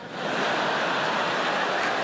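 Large theatre audience laughing and applauding: a loud, steady wash of sound that swells in just after the start.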